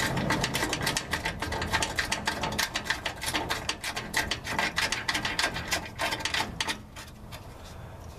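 Rapid, steady ratchet clicking, many clicks a second, as the vent solenoid bracket's single mounting bolt is run in. The clicking fades out about a second before the end.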